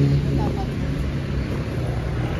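A motor vehicle's engine running steadily close by, with voices in the background.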